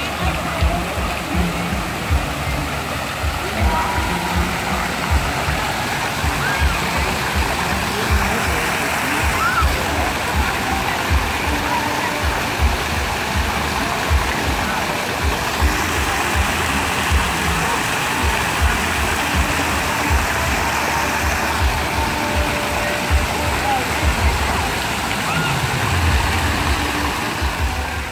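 Water jets of a public fountain splashing steadily into the basin, over music with a steady thumping beat from loudspeakers and the voices of people around.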